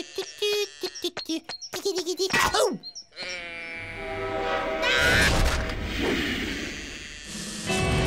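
Cartoon soundtrack: a run of short, squeaky pitched sounds in the first three seconds, then background music with held notes from about three seconds in, swelling around the middle.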